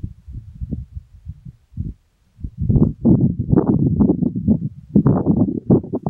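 Wind buffeting the microphone in gusts: an irregular low rumble that drops out briefly about two seconds in, then returns stronger.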